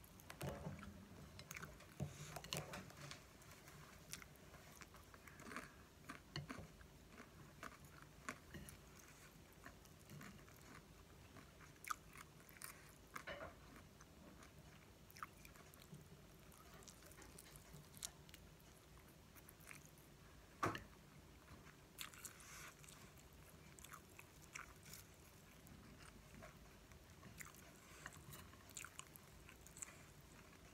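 A person chewing and biting fried instant noodles and fried egg, soft and close, with scattered short clicks throughout and a sharper one about two-thirds of the way through.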